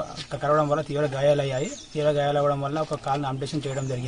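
A man speaking, with a few faint, high bird chirps behind his voice.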